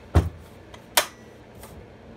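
Chain brake on a Stihl MS 261 C-M chainsaw being engaged by pushing the front hand guard forward, locking the chain so it can't turn. There is a dull knock just after the start, then a sharp click about a second in.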